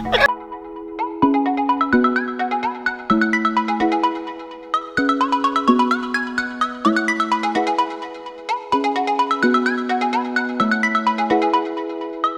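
Background music: a light melody of short, bright notes and chords in a steady repeating pattern.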